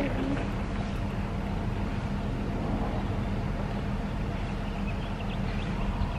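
A steady low engine-like hum and rumble, unchanging in pitch and level.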